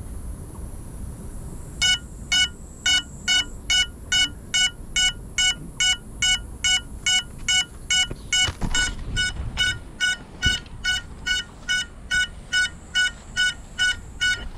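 A crashed FPV drone's lost-model beeper sounding a high, even beep about twice a second, starting about two seconds in: the alarm that helps the pilot find a downed quad. A brief rustle cuts in around the middle.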